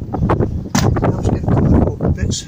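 Wind buffeting the camera's microphone: a loud, uneven low rumble that swells and dips.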